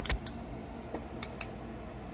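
Four short, sharp clicks in two close pairs about a second apart as a small UV flashlight is handled and switched on, over low room noise.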